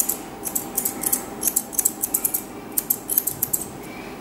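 Grooming scissors snipping through a West Highland terrier's coat at the throat, in repeated runs of quick, crisp cuts.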